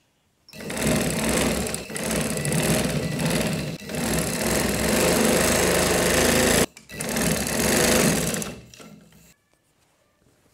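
Sewing machine running as it stitches fabric: one run of about six seconds that stops abruptly, then a second, shorter run of about two seconds that trails off.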